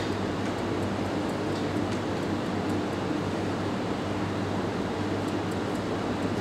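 Steady hiss with a low hum underneath and no speech: the background noise of an open microphone line, with a few faint clicks.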